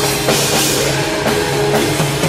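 Heavy metal band playing live, with the drum kit to the fore: dense drumming under sustained instrument tones, and a cymbal crash ringing out about a third of a second in.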